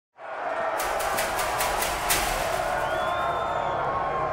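A crowd of fight spectators cheering and shouting, coming in abruptly out of silence, with several sharp cracks in the first two seconds.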